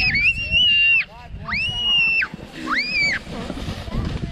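A child shrieking on a sled, three long high-pitched screams each up to about a second long, over a low rumble.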